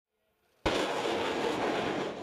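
Assault Breacher Vehicle launching its mine-clearing line charge: a sudden loud rocket blast about half a second in, followed by the steady rushing noise of the rocket motor carrying the explosive line out.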